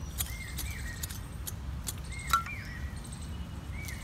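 A small hand hoe chopping and scraping into soft garden soil, a few faint knocks and scrapes. A bird's short gliding chirp repeats several times over a low steady rumble.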